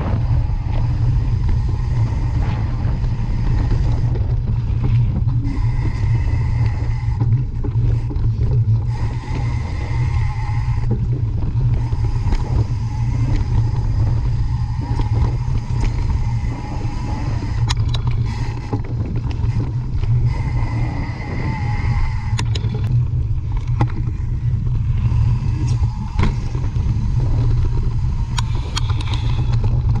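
Mountain bike ridden along a dirt singletrack, heard from a camera on the bike or rider: a constant heavy low rumble of wind buffeting and trail vibration, with scattered clicks and rattles over rough ground in the second half.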